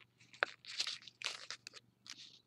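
Thin printed paper crinkling and crackling by hand, a few short crackles and a sharper click as fingers open a flap and squash-fold an origami piece.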